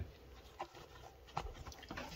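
A pet sniffing right at the microphone: a few faint, short sniffs.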